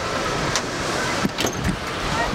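Steady rushing outdoor noise with a few sharp clicks, about half a second in and twice around the middle.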